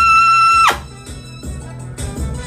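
Trumpet holding a loud, high, steady note that ends about two-thirds of a second in with a quick downward fall-off. Quieter backing music with a low bass carries on after it.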